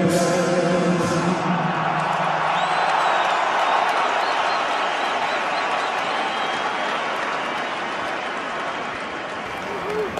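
The closing bars of the national anthem music, ending about a second and a half in, followed by a crowd applauding, which slowly dies down towards the end.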